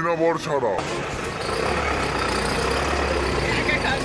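A brief bit of voice at the start, then a motor vehicle's engine running nearby with a steady low rumble from about a second and a half in.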